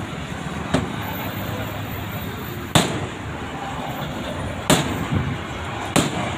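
Hammer blows on the bonnet of a Manitou backhoe loader: sharp single knocks about two seconds apart, a light one about a second in and three hard ones after it, the last at the very end, over steady background traffic noise.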